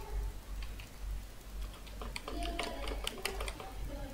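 Keystrokes on a computer keyboard, typing a command, sparse at first and then a quick run of clicks in the second half, over a low steady hum.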